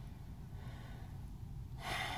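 A man's audible breath near the end, over a faint low rumble.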